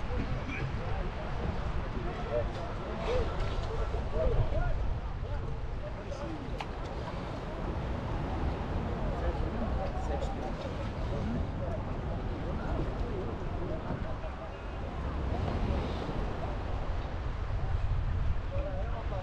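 Low, indistinct voices of the outrigger canoe crew over a steady rumble of wind on the microphone, with no paddling strokes.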